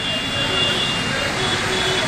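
Steady hiss of rain falling on a flooded street, with a few faint steady tones over it.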